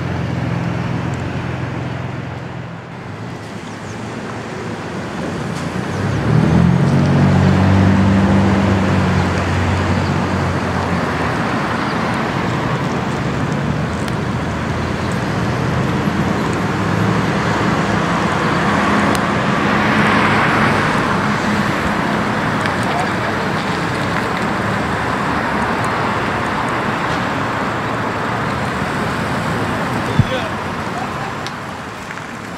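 Road traffic: vehicles going by, with a low engine hum that grows loud about six seconds in and a car passing about twenty seconds in.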